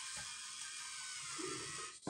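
Faint steady hiss of background noise, with a short soft low sound about one and a half seconds in.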